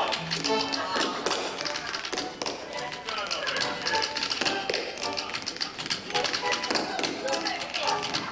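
Tap dancing: tap shoes striking a stage floor in quick, irregular runs of taps, over accompanying music.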